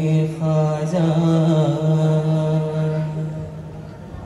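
Male voices singing a long held note of a devotional qawwali chant, with a steady low drone and melodic turns sung over it about a second in; the note fades away shortly before the end.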